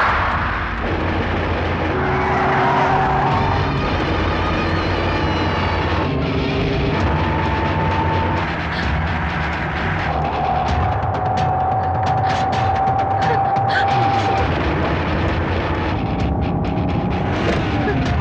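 Tense film background music of long held tones over a steady low drone, with a car's engine and road noise mixed under it; a run of sharp ticking hits comes in about ten seconds in.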